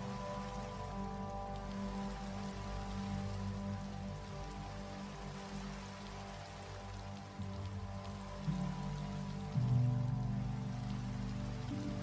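Background music of sustained low chords that change about eight and a half and nine and a half seconds in, over a steady hiss like rain.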